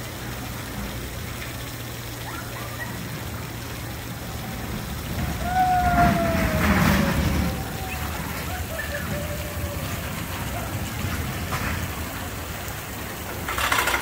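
A Gerstlauer spinning coaster's car rumbling along its steel track and swelling in loudness about five to eight seconds in, with a rider's falling yell over background voices. A short clatter comes near the end.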